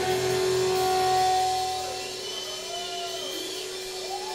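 A single electric guitar note held and ringing through the amplifier, steady in pitch, dropping in level after about two seconds as the song closes. A few short wavering tones sound over it in the second half.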